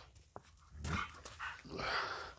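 A dog making a few short, breathy sounds, about two a second, starting about a second in, after a single faint click.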